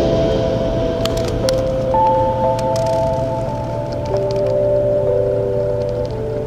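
Background music: slow held chords that change every second or two over a steady low drone, with a few faint high ticks.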